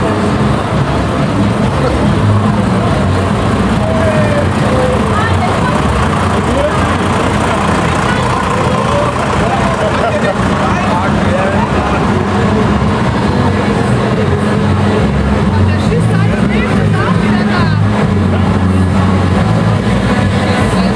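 Diesel tractor engines running steadily as tractors pull parade floats past, with people's voices over the engine sound.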